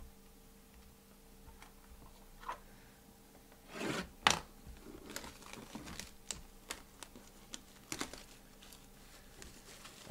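Hands opening a cardboard trading-card hobby box: rubbing and scraping of fingers on the box with a series of short clicks. The loudest is a scrape about four seconds in followed by a sharp click.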